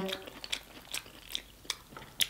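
Close-up chewing of corn on the cob in a wet seafood-boil sauce: scattered soft, wet mouth clicks and smacks about every half second, after the tail of a hummed "mm" at the very start.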